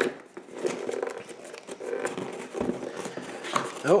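Folding knife blade cutting through the packing tape along the edge of a cardboard box: an irregular run of scratching and small crackling clicks, with light knocks as the box is handled.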